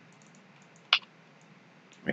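A single short keystroke on a computer keyboard about a second in, over faint room tone.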